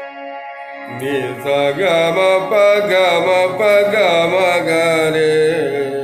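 Harmonium holding steady notes; about a second in, a woman's voice enters and sings a slow, gliding, ornamented melodic line over it. This is the unfolding (vistaar) of raag Bhimpalasi.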